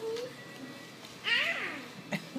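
A woman's voice making two wordless cries: a short one at the start, then a longer one about a second in that rises and falls in pitch.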